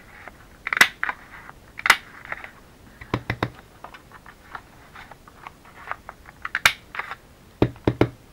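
Handheld heart-shaped paper punch cutting hearts out of white cardstock: a series of sharp snapping clicks, one each time it is squeezed, spaced about a second or more apart.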